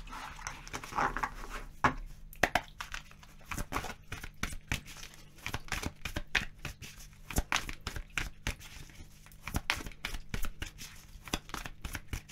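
A deck of oracle cards shuffled by hand: a quick, irregular run of soft card clicks and slaps.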